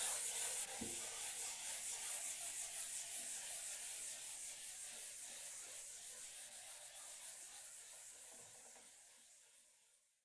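A board eraser rubbing out writing on a lecture board in quick back-and-forth strokes, a dry hiss that grows fainter and stops near the end.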